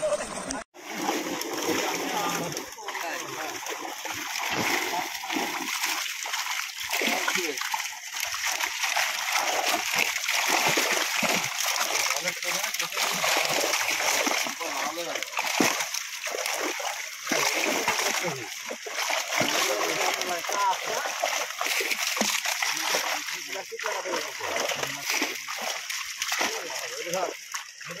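Constant splashing of water from a netful of fish thrashing in shallow pond water, inside a drawn-up seine net.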